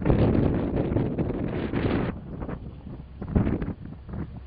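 Wind buffeting the microphone, loud for about two seconds and then dropping away. Under it runs the low rumble of a slow work train of ballast hopper wagons approaching on the track.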